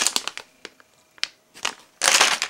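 Plastic packs of soft-plastic fishing baits crinkling as they are handled: a cluster of crackles in the first half second, then a few separate clicks.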